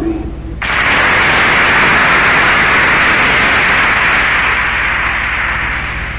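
Large audience applauding, starting suddenly about half a second in and slowly fading toward the end.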